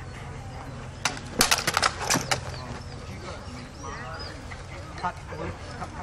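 Longswords clashing: a quick flurry of sharp blade-on-blade strikes starting about a second in and lasting about a second and a half.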